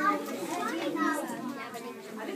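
Several children's voices talking over one another, a general classroom chatter with no single clear speaker.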